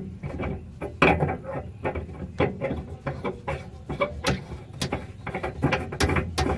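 Irregular small clicks and scrapes of metal as a CNG fuel filter canister is turned onto its threads by hand, over a low steady rumble.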